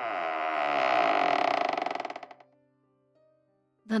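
A long, buzzy fart sound effect, the sharp noise of a ghost's 'demon winds': its pitch drops at the start, then it breaks into a sputtering flutter and stops about two and a half seconds in. A faint music drone runs underneath.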